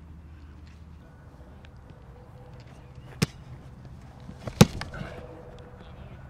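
A football being punted: a sharp knock about three seconds in, then a second and a half later the louder impact of the foot striking the ball, with a few small knocks around it.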